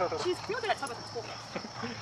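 Speech from a video played back at double speed, fast and high-pitched, over a steady high-pitched drone.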